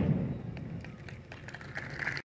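A brief gap in the band music: the previous passage dies away in the first half second. What remains is faint outdoor background with a few light ticks, and a faint tone near the end.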